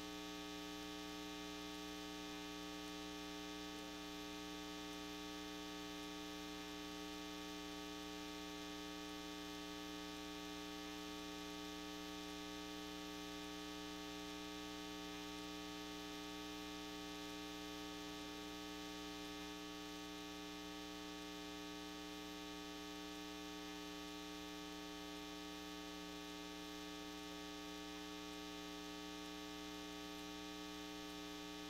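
Steady electrical mains hum with a buzzing stack of overtones, picked up through the meeting's microphone and sound system, holding level with nothing else standing out.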